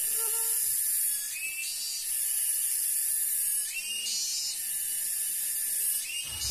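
Insects buzzing in a high, steady drone that pulses in stretches of a second or two, with a few short chirps in between.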